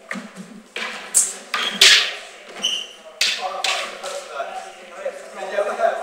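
Sword blades clashing in a fencing exchange: a run of sharp strikes, about five in the first three and a half seconds, one of them ringing briefly, mixed with thuds of feet on a wooden floor.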